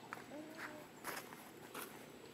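Four faint rustling scuffs on dry ground, about half a second apart, with faint short calls in the background.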